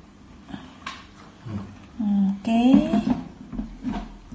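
Short wordless vocal sounds from a person, pitch gliding, about two to three seconds in, with a couple of light knocks about a second in and near the end.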